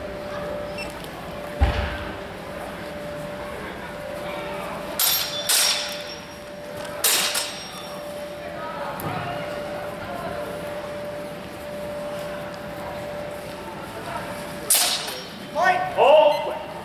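Steel longswords clashing in a fencing exchange: two sharp strikes about five seconds in, another about seven seconds in, and one more near the end, over a steady hum.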